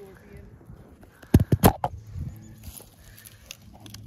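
A quick run of four or five sharp knocks and rustles about a second and a half in: handling noise as the camera is moved and lowered close to the ground through dry grass and leaf litter. A few fainter knocks follow.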